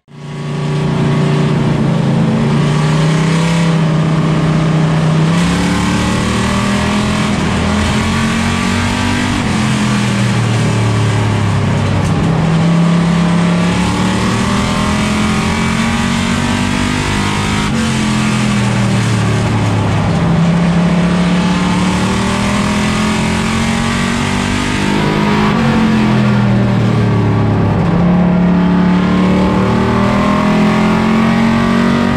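Plymouth Duster race car's engine at racing speed, heard from inside the cockpit. It climbs in pitch as the car accelerates down each straight and drops off as the driver lifts into the turns, several times over.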